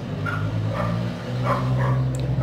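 Background noise from the busy neighbourhood outside: a dog barking faintly several times over a steady low hum.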